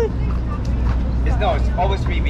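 Nearby people talking in snatches over a steady low outdoor rumble.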